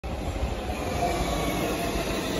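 Stockholm metro C20 train running along an elevated concrete viaduct as it comes into the station: a steady rumble of wheels on the track.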